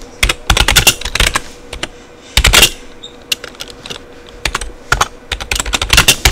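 Typing on a computer keyboard: quick runs of key clicks with short pauses, and one louder, longer keystroke about halfway through.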